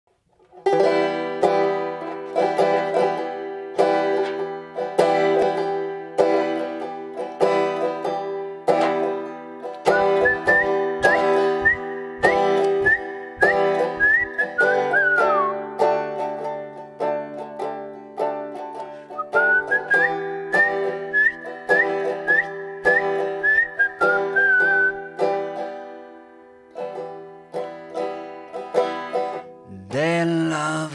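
Open-back banjo picking a steady rolling accompaniment, with a man whistling the melody over it from about ten seconds in. The whistling breaks off for a few seconds around the middle, then carries on until about twenty-five seconds in.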